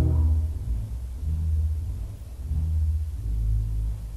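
Three-manual 1889 "Father" Willis pipe organ playing deep, low notes that swell and dip about once a second, with little sounding above them.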